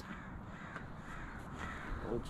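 A bird cawing faintly a few times in the background.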